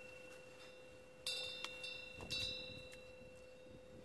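A small bell, such as a wind chime, ringing faintly: one strike about a second in and a weaker one past the two-second mark, each leaving a clear tone that fades slowly, over the dying ring of an earlier strike.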